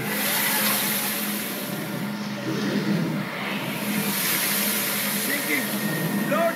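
A steady rushing storm noise of wind and waves from a film soundtrack, with faint voices in it.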